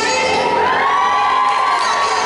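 Audience cheering and whooping over the routine's backing music.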